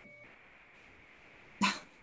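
Faint steady hiss of a video-call line, then one short, loud burst of a person's voice near the end.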